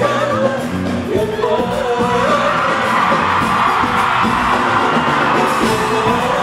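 Live Arabic pop concert: a woman singing over a band, with the audience's voices swelling up through the middle as the crowd joins in and cheers.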